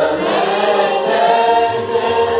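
A group of voices singing together in unison: a Hindustani classical composition in Raga Kedar, sung in long held notes that glide gently in pitch.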